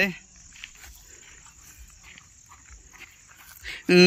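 Steady, faint high-pitched chirring of insects, typical of crickets, in a quiet lull between voices. A man's voice briefly opens and then comes back loudly at the very end.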